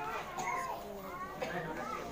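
Faint, high-pitched background voices.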